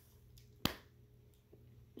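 A single sharp click about two-thirds of a second in, over a faint steady hum in an otherwise quiet room.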